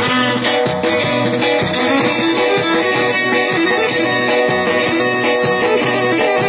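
Live Pontic folk dance music: the Pontic lyra playing a melody over percussion and an amplified keyboard, with a steady beat.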